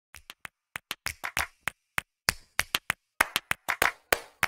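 A quick, uneven run of sharp claps and clicks from a title-card intro effect, sparse at first and coming closer together near the end.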